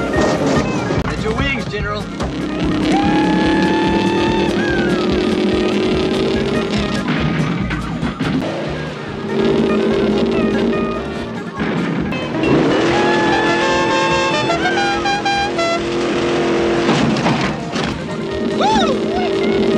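The General Lee, a 1969 Dodge Charger, with its V8 engine revving and running hard through a series of jumps. The engine is mixed with background music, and the sound breaks twice where one jump clip cuts to the next.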